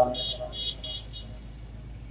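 A quick run of about five high-pitched beeps, then a steady low electrical hum.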